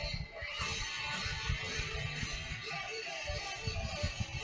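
A Japanese pop-rock band's song with electric guitars over a steady drum beat, playing back quietly.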